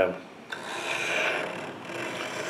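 A dull steel knife blade drawn down a coarse diamond sharpening rod of a Lansky Turn Box in one long stroke. The even scrape starts about half a second in and lasts about a second and a half.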